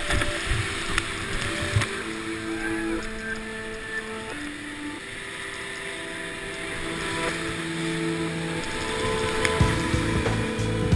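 Rushing whitewater of a steep rapid, heard from a kayak running it, under background music of long held notes that change pitch every second or two.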